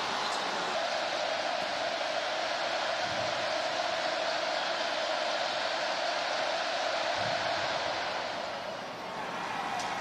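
Large stadium crowd, a steady wash of crowd noise that eases off briefly near the end.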